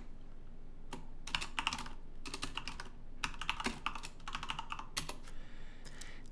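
Typing on a computer keyboard: quick runs of keystrokes in four or so bursts, with short pauses between them.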